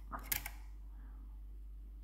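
Two quick mechanical clicks about a fifth of a second apart from the leaf shutter of an early-1900s Kodak folding Brownie camera as its release is worked on the T (time) setting.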